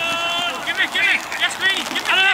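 Men's voices shouting and calling out, unworded, beginning with one long held shout followed by several short, high-pitched calls.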